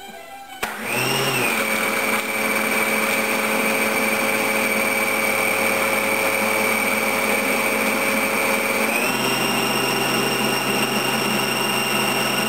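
Food processor motor switched on with a click, then running steadily as its plastic dough blade mixes whole wheat flour while water is poured in through the feed tube. Its pitch rises slightly about nine seconds in.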